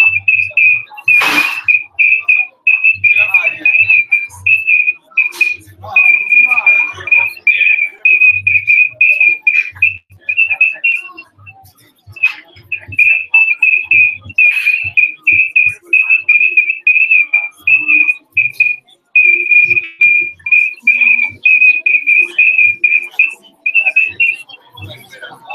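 Audio feedback squeal from the venue's microphone and speaker system: a loud, steady high tone held at one pitch, chopped into rapid stutters, dropping out briefly a little before halfway and then returning. A sharp click sounds about a second in.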